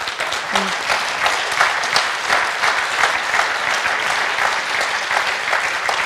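Audience applause: dense, steady clapping from many hands, with a brief voice heard about half a second in.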